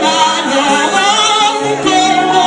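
A woman singing a Spanish-language song with vibrato over sustained instrumental accompaniment.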